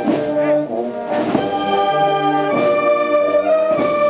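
Brass band playing a slow processional march: long held brass chords, with a percussion stroke about every second and a bit.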